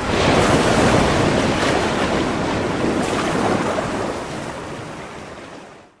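A loud, steady rush of wind and sea surf, used as an intro sound effect. It fades out over the last couple of seconds.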